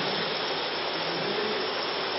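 A steady, even hiss of background noise with no other events, most likely room or recording noise.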